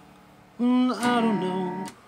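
Acoustic guitar accompaniment between sung lines: the previous chord fades out, then about half a second in a new passage is played and rings for over a second before dropping away near the end.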